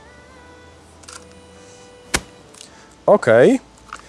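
A camera shutter firing once: a single sharp click about two seconds in.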